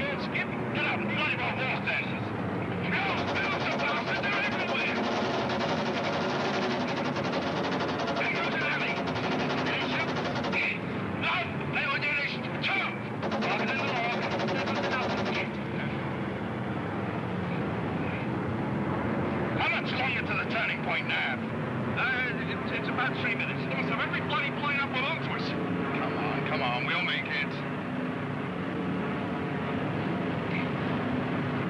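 Steady drone of bomber aircraft engines, with indistinct voices over it at times and a rapid rattle in the middle.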